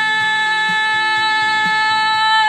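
A woman's singing voice holding one long, steady high note over soft accompaniment.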